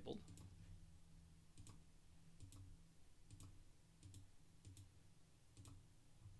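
A series of faint computer mouse clicks, roughly one a second, over a low steady hum.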